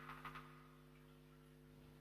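Near silence: a faint steady electrical hum, with a brief burst of noise dying away in the first half second.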